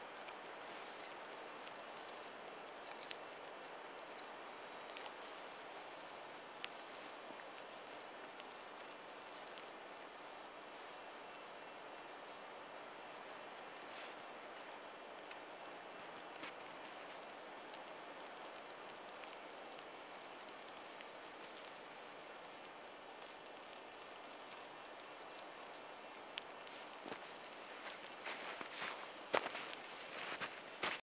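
Small fire of dry twigs burning faintly, with scattered soft crackles over a steady low hiss. A denser run of crunching clicks comes near the end.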